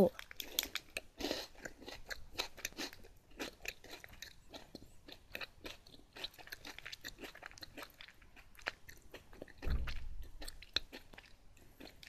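Close-up chewing of a large-size strawberry-white Kinoko no Yama, a chocolate-capped cracker biscuit. The mouth gives a run of small crisp crunches throughout, and there is a low muffled bump about ten seconds in.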